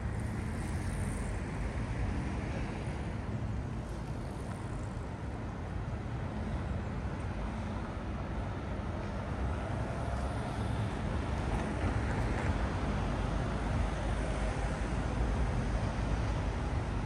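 City street ambience of light road traffic: a steady low rumble of passing vehicles, growing a little louder in the second half.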